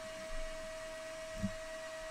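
Cooling fans of an Edgecore AS5712 bare-metal network switch running steadily, heard as an even hiss with a faint constant whine. A brief low thud comes about one and a half seconds in.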